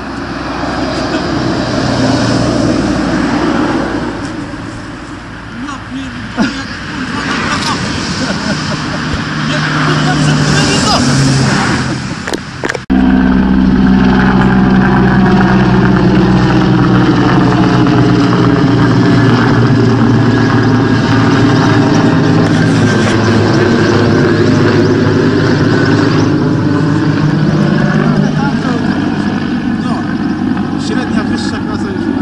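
Helicopter flying low overhead: a loud, steady rotor and engine hum, with a tone that sweeps down and back up as it passes over. The sound jumps abruptly louder about thirteen seconds in.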